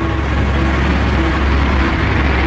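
Propeller bomber engines droning steadily: a low, even hum under a rushing noise.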